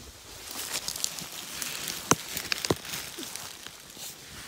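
Dry leaf litter and twigs crackling and rustling as someone steps and reaches through them, with a couple of sharper snaps about halfway through.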